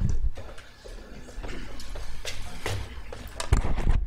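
Microphones being handled: a low thump at the start as a desk microphone is touched, a few small knocks and room noise in between, and another low thump shortly before the end as a handheld microphone is taken up.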